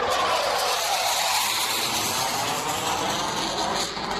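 Blue Angels military jet flying over: a steady rush of jet-engine noise, with a faint tone that falls in pitch over the first second or two as the jet passes.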